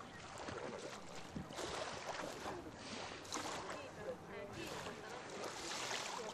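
Small sea waves washing onto a sandy beach in repeated soft swells, with people talking faintly in the background.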